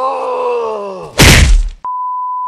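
A drawn-out groaning voice sliding down in pitch, then a loud slap on the face about a second in. A steady, high beep tone starts just before the end.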